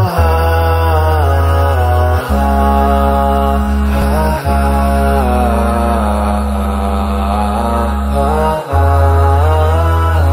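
Intro music: a chanting voice sings long, winding melodic lines over a steady low drone that shifts to a new pitch every few seconds.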